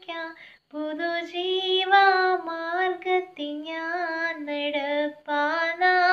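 A young woman singing a Malayalam Christian praise song solo and unaccompanied, with a short breath pause just under a second in.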